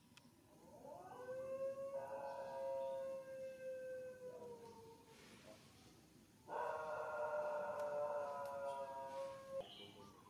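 Baby macaque crying to its mother for food: two long wailing calls held at a steady pitch. The first runs about four seconds from a second in and sags at its end; the second comes after a short pause and cuts off suddenly near the end.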